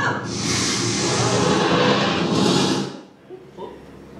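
A loud rushing, hissing sound effect from the wand-shop show's speakers. It runs for nearly three seconds and then cuts off suddenly. It is the effect for a wand attempt that fails.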